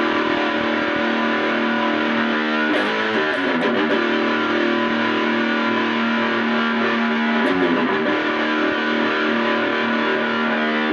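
Flying V electric guitar played with distortion: long ringing chords, changing about three seconds in and again about seven and a half seconds in, with a few pick attacks at each change.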